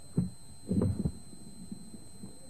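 Dull low thumps, one just after the start and a short cluster about a second in, over a steady background hum.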